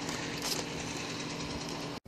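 A steady low mechanical hum over even background noise, like a motor running; it cuts off suddenly at the end.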